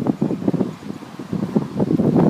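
Wind buffeting the phone's microphone: gusty, uneven rumbling that eases off in the middle and picks up again near the end.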